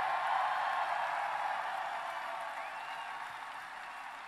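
Large crowd cheering and applauding, loudest at first and slowly dying down.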